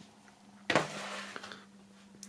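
A brief rustle of printed paper and card being handled, starting suddenly about two-thirds of a second in and fading over the next second with a small click, over a faint steady low hum.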